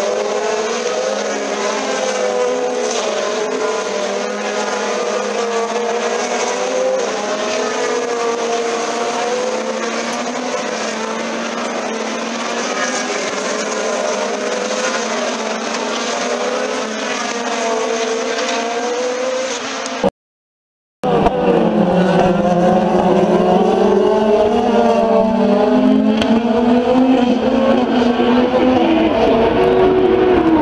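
A field of open-wheel race cars running at speed, many engine notes overlapping and rising and falling in pitch as they accelerate and pass. The sound drops out for about a second about two-thirds of the way through, then the cars return fuller and deeper, with engines climbing in pitch.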